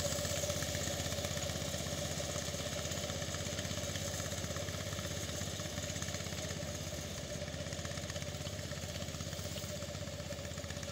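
Small engine of a motorized rice reaper-binder running steadily, growing slightly quieter over the span.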